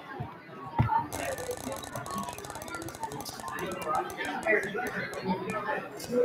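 Ticking sound effect of an online spinning wheel, a fast run of clicks that grows sparser as the wheel slows to a stop. A single knock comes just before the ticking starts.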